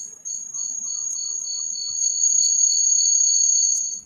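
A high-pitched chirring whine that builds from quick pulses into one steady tone, then cuts off suddenly near the end.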